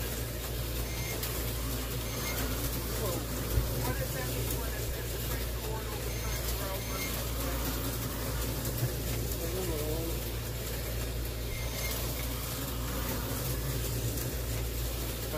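A steady low mechanical hum with a constant hiss above it, and one sharp click about three and a half seconds in.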